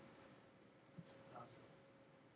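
Near silence with a few faint computer mouse clicks about a second in.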